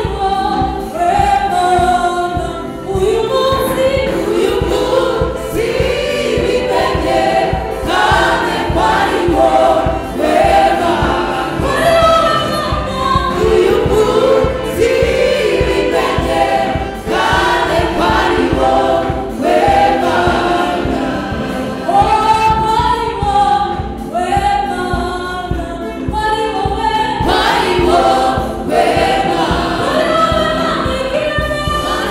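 A gospel choir of mostly women's voices singing through microphones, with hand-clapping along.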